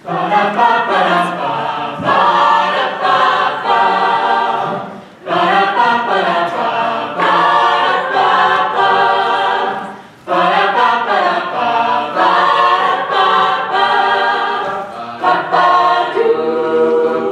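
Mixed-voice a cappella group singing in close harmony, the voices coming in together at once, with short breaks between phrases about five and ten seconds in.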